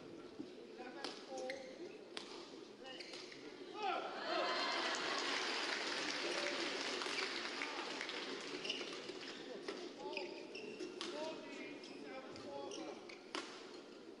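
A badminton rally in a hall: sharp racket strikes on the shuttlecock, then about four seconds in, a loud crowd cheer with shouting swells up and slowly dies away while the rally goes on.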